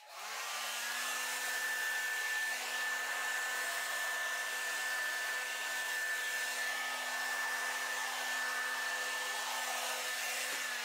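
Handheld blow dryer switching on and running steadily: a rush of air with a low steady hum and a thin high whine. It is blowing thinned acrylic paint across a canvas in a Dutch pour.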